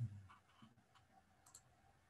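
Near silence with a few faint clicks of a computer keyboard and mouse.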